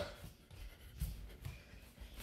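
Faint footsteps and shuffling on a hardwood floor, with soft thumps about a second in and again half a second later.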